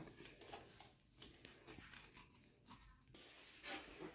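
Near silence with faint rubbing and clicking as the black metal poles of a small side table are twisted together by hand, with a short soft knock at the start.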